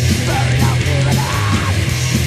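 Crust punk recording: heavily distorted guitars, bass and pounding drums played at full tilt, with a hoarse shouted vocal over them.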